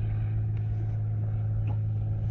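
Boat engine idling: a steady low hum that does not change.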